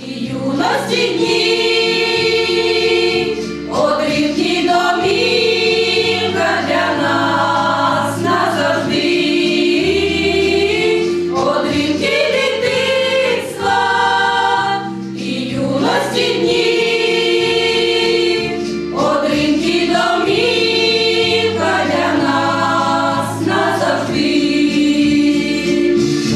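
A women's folk choir singing a Ukrainian song together in harmony, in long held phrases with brief breaths between them, over a low bass accompaniment.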